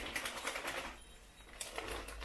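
Shiny wrapping paper crinkling and crackling in quick, irregular bursts as a wrapped present is handled and its paper pulled open, easing off for a moment midway and picking up again near the end.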